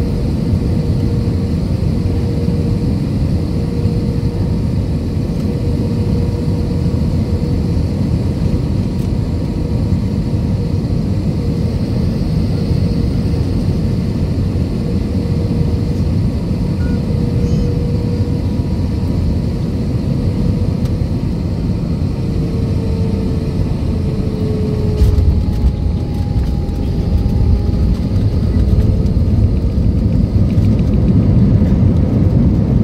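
Jet airliner cabin noise on final approach: the steady drone and whine of the engines and airflow. About 25 seconds in comes the jolt of touchdown, and the rumble grows louder as the plane rolls out on the runway with its spoilers up, the whine dropping in pitch.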